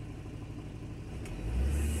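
Ford Transit Connect 1.8 TDCi diesel engine idling, then revved up about a second and a half in, the engine note rising and getting louder. The rev raises exhaust back-pressure to check the particulate filter's differential-pressure reading.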